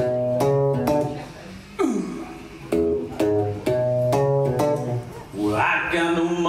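Archtop electric guitar playing a blues intro of short chord stabs in an even rhythm, with one chord sliding down in pitch about two seconds in. A blues harmonica comes in with wavering notes near the end.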